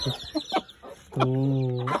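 Chickens clucking in a coop, with short scattered sounds in the first second. A person's voice holds one long drawn-out sound over the second half, and it is the loudest thing heard.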